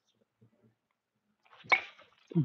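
A baseball bat swung hard and striking a ball off a batting tee. A short rush of swing noise ends in one sharp crack near the end.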